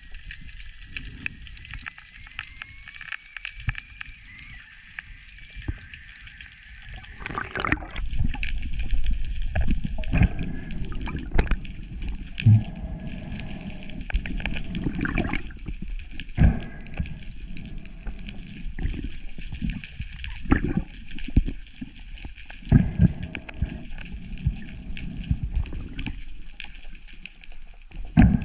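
Water sloshing and gurgling around an underwater camera. It is quiet at first, with a faint steady high whine. From about seven seconds in it grows louder and choppier, with irregular knocks, as a speared octopus is handled near the surface.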